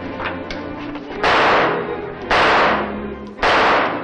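Three gunshots about a second apart, each a sharp crack that dies away quickly, over dramatic background music.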